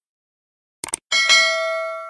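Subscribe-button animation sound effect: a short mouse click just before a second in, then a bright bell ding, struck twice in quick succession, that rings on and fades.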